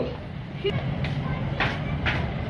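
Low, steady rumble of road traffic.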